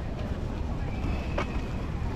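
Wind rumbling on the microphone over the murmur of a crowd walking along a street, with one sharp click about one and a half seconds in.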